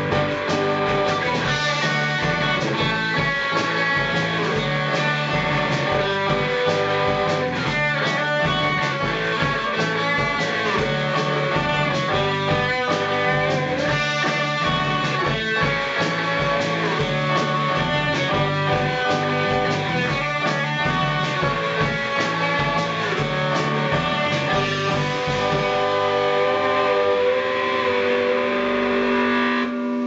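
Live rock band playing electric guitar and drum kit. The drum hits thin out in the last few seconds, leaving held guitar notes ringing.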